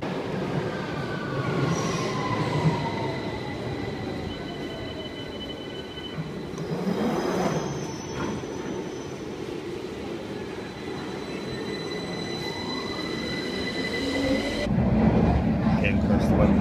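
London Underground tube train at a station platform: high, steady squealing tones over rumbling noise, with a whine falling in pitch over the first five seconds and another rising about twelve seconds in. About a second before the end the sound switches abruptly to the louder, low rumble of a moving train.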